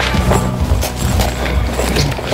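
Background music: a song playing with a steady low bass.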